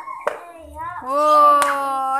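A child's voice holding one long, steady call from about a second in, after a short sharp click near the start.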